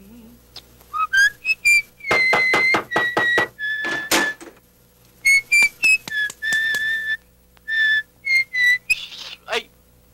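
A man whistling a short tune: a string of clear, high notes, the first few sliding upward, later ones held, some with a quick warble.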